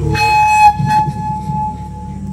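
A loud horn-like blast: one held note, bright and blaring for under a second before it drops away suddenly, then carries on fainter, over a low steady drone.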